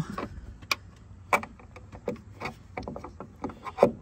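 Scattered clicks and knocks of a metal door check being worked through the door opening of a 2009-2014 Ford F-150 and knocking against the door's metal and trim, the sharpest knock near the end.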